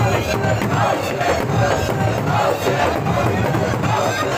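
A crowd of mourners chanting a noha together while beating their chests in unison (matam). The slaps land about twice a second in a steady beat under the singing.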